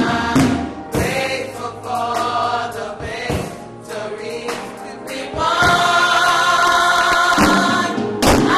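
A church choir singing a gospel song, the voices swelling into a long, louder held chord in the second half.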